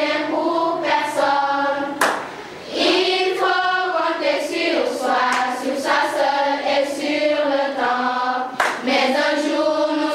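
A choir of schoolchildren singing a song together, with a short break in the singing about two seconds in.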